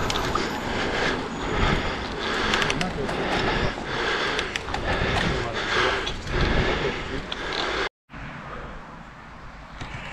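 Wind rushing over the microphone and tyre noise from road bikes rolling on tarmac: a steady rough hiss with occasional small knocks. It cuts off abruptly about eight seconds in, giving way to much quieter outdoor background.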